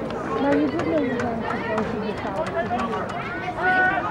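Several spectators' voices talking and calling over one another, with a few sharp clicks scattered through.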